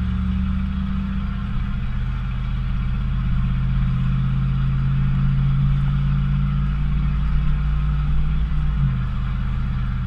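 Ford 460 big-block V8 pulling a heavy trailer load, heard from inside the pickup's cab: a steady low engine drone as the truck moves off and drives on, its note changing abruptly about nine seconds in.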